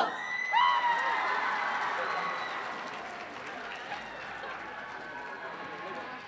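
Audience applause and cheering right after a chanted group cheer, with a few high whoops in the first second. The clapping then dies away gradually.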